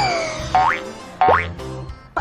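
Bouncy children's background music with two quick rising cartoon boing sound effects, about half a second in and again about a second and a quarter in.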